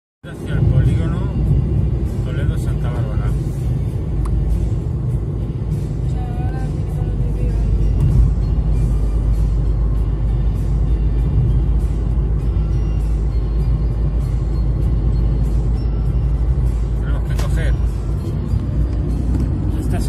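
Road and engine noise inside a moving car's cabin at highway speed: a steady low rumble, with a few brief faint voice-like sounds over it.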